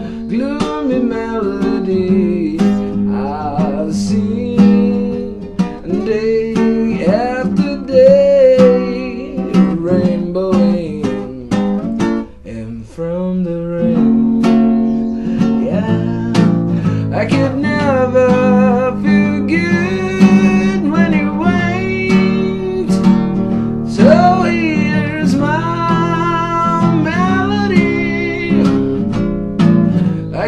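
A man singing a slow song while strumming an acoustic guitar, the voice sliding and wavering over steady chords. The playing drops away briefly about twelve seconds in, then picks up again.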